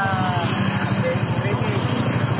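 Motorcycle engine idling with a steady, even low pulse, under a voice trailing off at the start.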